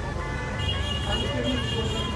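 Outdoor street background at night: a steady low rumble of road traffic, with faint voices and a thin steady high tone.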